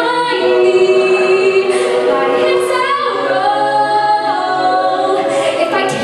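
A cappella group singing, with a female lead voice over the group's backing vocals.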